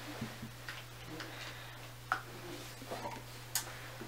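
Scattered light clicks and faint rustles from handling a small jewelry gift box and ring, irregular and about one every half second to second, over a steady low electrical hum.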